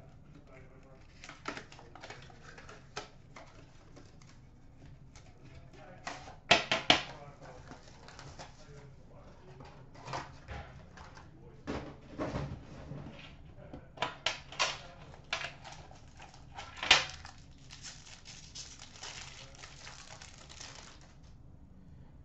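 A cardboard trading-card box being handled and opened by hand: scattered clicks and knocks of the box and its lid, then a longer rustle near the end.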